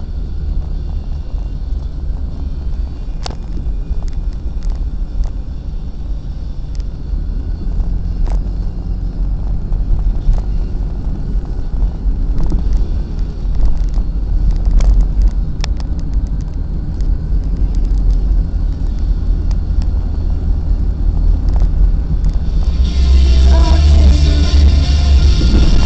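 Steady low rumble of a car driving, heard from inside the cabin, with a few light clicks. Music starts about a second before the end.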